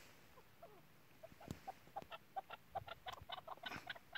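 Chukar partridge clucking faintly: a run of short, quick calls, several a second, beginning about a second in.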